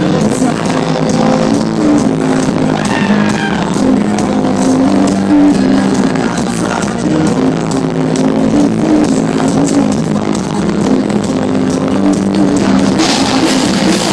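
A metal band playing live at full volume: distorted guitars holding low riff notes over bass and a pounding drum kit. The sound grows brighter near the end.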